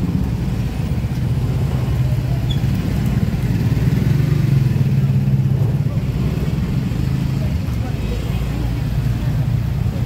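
Street traffic: car and motorcycle engines running in a slow-moving queue, a steady low hum that swells a little around the middle, with indistinct voices of people around.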